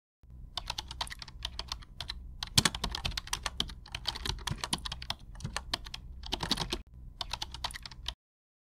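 Keyboard typing sound effect: rapid, irregular key clicks in short runs with brief pauses, over a low hum, stopping abruptly at the end.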